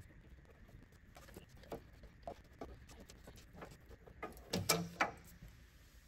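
Small tubing cutter being turned around a steel fuel line to cut it: a run of faint clicks and scrapes, with a louder burst of several clicks about four to five seconds in.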